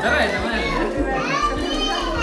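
Background music with a steady beat, mixed with several people's voices talking and laughing.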